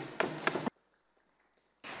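A few sharp taps in the debating chamber, then the sound cuts out to dead silence for about a second as the microphone feed drops.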